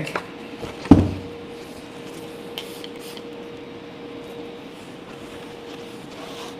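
A single sharp wooden thump about a second in, as the shelf board is set down flat on the cardboard boxes, followed by a few faint scuffs of a rag wiping it over a steady faint hum.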